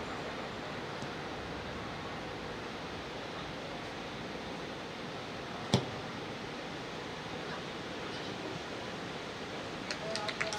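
Steady open-air hiss of a floodlit football pitch, with one sharp thud a little before the six-second mark.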